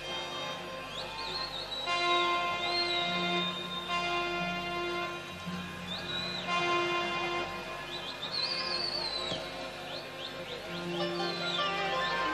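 A large Arabic orchestra plays an instrumental passage of long held notes. High, wavering, whistle-like glides rise and fall above it several times.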